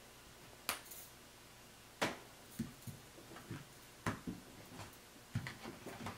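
Tarot cards dealt onto a cloth-covered table one at a time: three sharp card snaps, with softer taps and slides of the cards between them.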